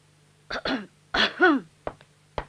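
A man clearing his throat to get attention: two short rasps, then a louder voiced "ahem" falling in pitch, followed by a short click near the end.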